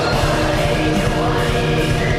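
Atmospheric black metal playing as a dense, steady wall of distorted guitar over fast drumming, with a choir-like vocal layer above it.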